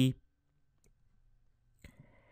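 A single faint click of a computer mouse button near the end, after a stretch of near silence.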